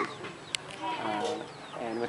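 A chicken clucking, with a short sharp click about half a second in.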